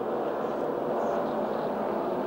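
A pack of NASCAR Cup stock cars' V8 engines running at speed, a steady drone on the race broadcast's track audio.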